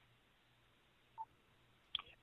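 Near silence: faint line hiss with one short, faint blip a little over a second in and a tiny click just before the end.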